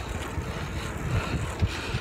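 Wind rushing over the microphone of a camera held by a cyclist on a moving bicycle: a steady noisy rush with an uneven low rumble.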